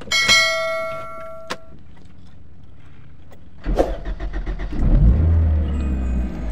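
A click and a single ringing ding that fades over about a second and a half, then about three and a half seconds in a Suzuki car's engine cranks and starts, settling into a steady low running sound heard from inside the cabin.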